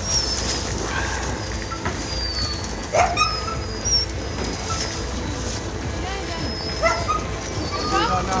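Penned huskies barking, yipping and whining in a chorus of short high calls, with one loud bark about three seconds in.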